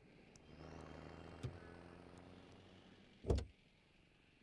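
A vehicle engine running faintly and steadily, fading out toward the end, with a small click midway and a short sharp thump a little after three seconds.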